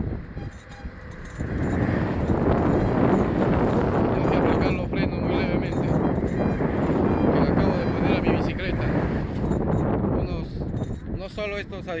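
Wind rushing over the microphone of a camera carried on a moving bicycle, mixed with the noise of road traffic alongside; the rush swells about a second and a half in and holds steady.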